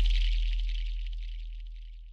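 The dying tail of a glass-shattering sound effect: a deep low boom fades steadily under a thin high tinkle and hiss of falling glass shards.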